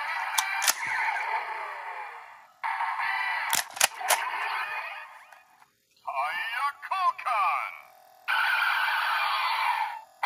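Kamen Rider Drive Drive Driver belt toy playing electronic music and sound effects through its small, thin-sounding speaker, broken by sharp plastic clicks: two near the start and three in quick succession about three and a half seconds in, as a Shift Car is worked in the wrist brace. The sound drops out briefly before six seconds, then gliding electronic tones follow, and steady music comes back near the end.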